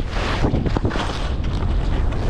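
Skis sliding and turning through snow in a series of swishes, over a steady low rumble of wind buffeting the camera microphone.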